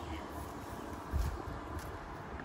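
Steady outdoor background noise with a low rumble and a single low thump about a second in.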